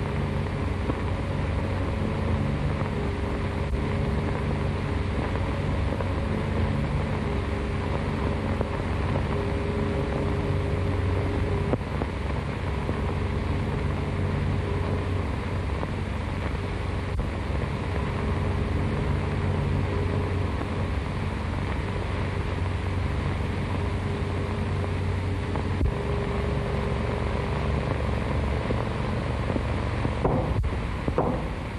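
Low, held droning chords of an early-1930s film score over heavy hiss and rumble from an old soundtrack, the chords shifting about 12 seconds in and again near 26 seconds.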